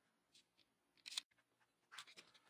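Near silence: quiet room tone, with one faint short click a little after a second in.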